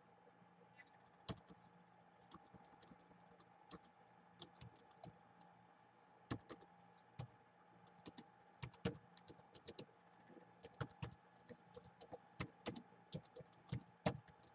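Quiet typing on a Gateway laptop's built-in keyboard: irregular key clicks, sparse at first and coming faster in the second half, over a faint steady hum.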